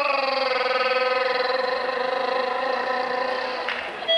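A man singing one long held note with a wavering vibrato, the pitch sliding down a little at the start; it breaks off shortly before the end.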